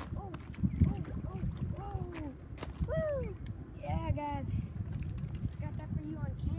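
A boy's repeated short, excited cries of "oh" as he fights a hooked fish on his line, each cry rising and falling in pitch.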